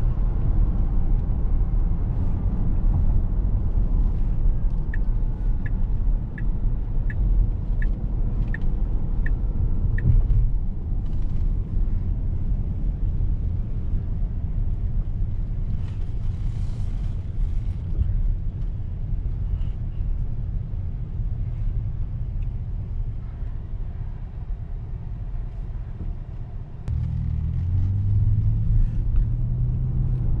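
Steady low road and tyre rumble inside the cabin of a moving Tesla Model X electric SUV, with no engine note. From about five to ten seconds in, a run of about eight short, high ticks comes evenly, roughly 0.7 s apart. Near the end the rumble steps up.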